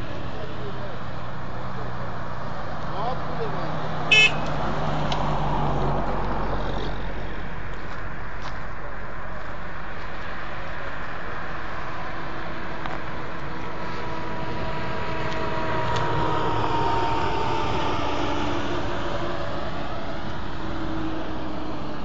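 Road traffic passing on a highway, a steady rush of engine and tyre noise with a vehicle going by in the second half. A brief sharp high sound cuts in about four seconds in.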